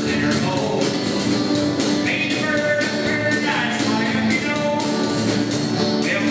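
Live country band playing: acoustic guitars, electric bass and a drum kit keeping a steady beat, with a melody line that slides between notes.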